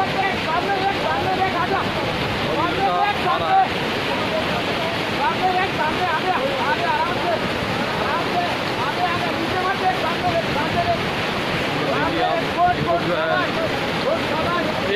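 Steady rushing of a river in sudden flood, with many people talking and calling over it.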